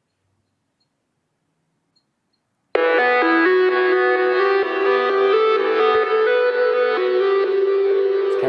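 Near silence, then about three seconds in a synthesizer track starts playing back abruptly: sustained, held chord notes that step from one pitch to another and carry on to the end.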